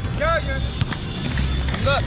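Inline skate wheels rumbling on a concrete court, with two sharp knocks about a second apart. Two short shouted calls come from players, one near the start and one near the end.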